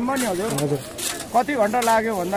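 A man's voice speaking close by, drawn-out and low-pitched, with no other distinct sound standing out.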